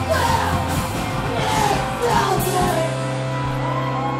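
Punk band playing live with yelled vocals over distorted guitars, bass and drums. The voice drops out near the end, leaving held guitar notes ringing.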